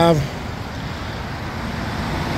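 Steady low rumble of motor-vehicle noise, with no single event standing out.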